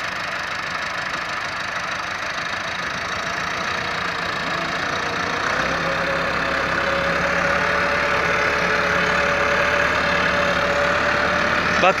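Massey Ferguson 385 tractor's four-cylinder diesel engine running steadily under load, driving a rotavator through the soil. It grows gradually louder, and a steady whine comes in about halfway through.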